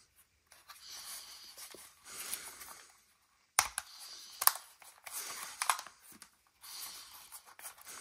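Handling noise from a small plastic DJI Mini 4K drone as it is turned over and unfolded in the hands: rustling scrapes of plastic, and two sharp plastic clicks about three and a half and four and a half seconds in.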